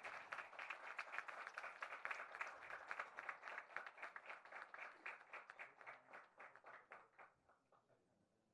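Faint audience applause, a dense patter of many hands clapping, thinning out and dying away about seven seconds in.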